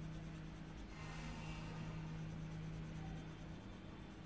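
A blue colouring pen scratching over paper in short strokes as it fills in a drawing, over a steady low hum.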